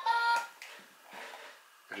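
Electronic tune from a toy piano book's small built-in speaker, cutting off about half a second in, followed by quiet room noise.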